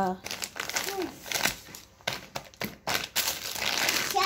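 Plastic bags and food packaging crinkling on and off as groceries are picked up and moved.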